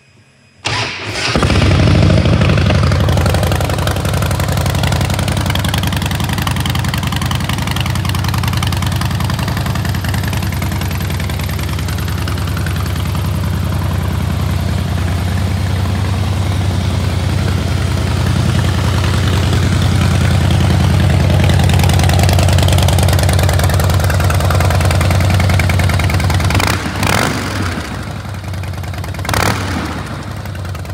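A 2008 Harley-Davidson Rocker C's Twin Cam 96B V-twin with stage one tuning and Vance & Hines exhaust starting about a second in, then idling steadily. Two short sharp sounds come near the end.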